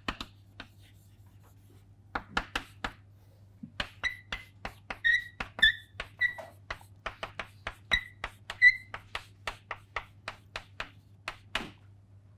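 Chalk writing on a chalkboard: a rapid, irregular series of sharp taps and strokes, with several short high squeaks from the chalk in the middle stretch.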